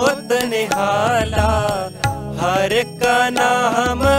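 Sikh Gurbani shabad kirtan music: a melodic line with sliding pitch bends over low sustained bass notes.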